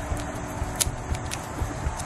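Wind rumbling on an outdoor microphone, with one sharp click a little under a second in.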